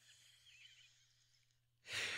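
Near silence, then a short breath near the end.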